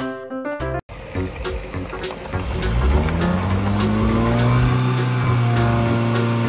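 Piano-like music stops abruptly just under a second in; then a car engine rises in pitch over about a second and holds at a steady, high drone, with music continuing underneath.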